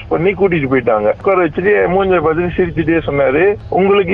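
Speech only: a person talking without a break, with only brief pauses between phrases.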